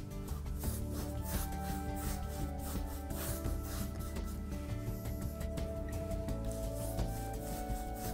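Flat paintbrush rubbing back and forth across stretched canvas in repeated short strokes, over background music with long held notes.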